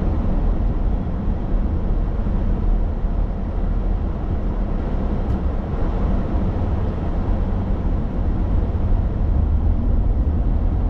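Steady low rumble of a car's road and engine noise, heard inside the cabin while driving.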